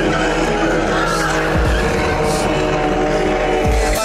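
A BMW 3 Series (E46) coupe drifting: engine running hard and tyres squealing as they spin and slide, mixed with background music.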